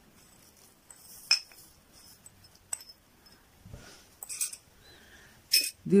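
A few light clinks of kitchenware being handled near small metal saucepans, the sharpest about a second in, with a soft rustle later on.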